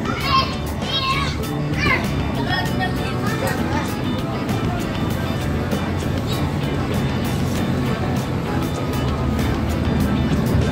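Background music with steady low notes. Voices, including children's, are heard during the first two seconds.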